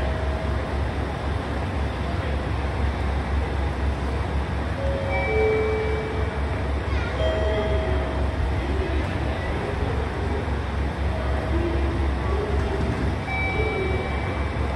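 Railway station platform ambience: a steady low rumble under distant voices, with a few short held tones now and then.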